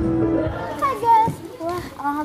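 Stage music stops abruptly about half a second in. A girl then starts talking.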